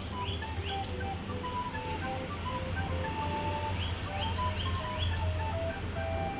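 Background music: a melody of short notes over a steady low drone, with quick rising chirp-like sweeps near the start and again about four seconds in.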